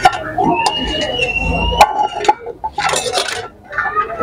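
Metal spoon clinking and scraping against a cooking pot while a mix of onions, tomatoes, peppers and okra is stirred, with several sharp clinks.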